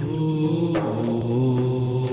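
Wordless chanted intro theme: low vocal notes held steadily, stepping to a new pitch a couple of times.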